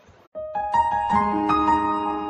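Background music on a piano-like keyboard, starting suddenly about a third of a second in, with sustained, overlapping notes.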